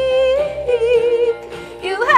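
A woman singing, holding a long note that wavers with vibrato and then fades; a new phrase starts just before the end. A keyboard accompaniment plays under her voice.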